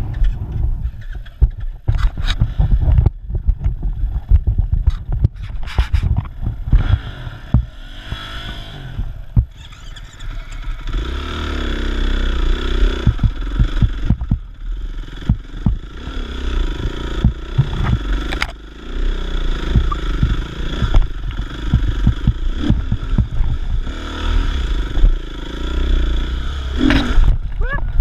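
Dirt bike engine running and revving while being ridden over rough, rocky ground. Through the first ten seconds there are many knocks and scrapes from the bike on rock. From about eleven seconds in the engine runs more steadily, its pitch rising and falling with the throttle.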